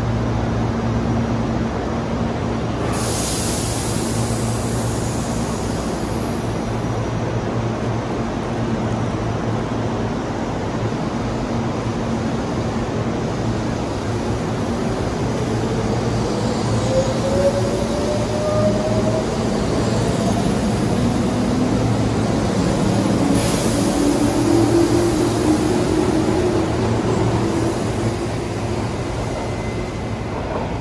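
Tobu 8000-series electric train pulling out of the platform: a steady low hum while it stands, then from about halfway a rising motor whine as it accelerates away, loudest a few seconds before the end.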